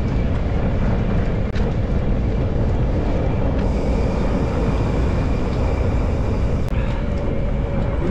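Wind rushing over the microphone and fat tyres rolling on a dirt road on a downhill fat-bike ride: a steady, low, rumbling hiss.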